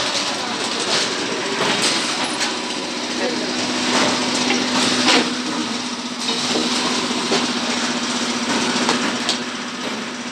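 Bottled-water seal-and-shrink packaging line running, with a steady machine hum that sets in about three and a half seconds in and repeated knocks and clatter of plastic bottles and film-wrapped packs. Workers' voices run underneath.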